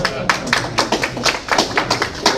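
A few audience members clapping: a quick, irregular run of handclaps.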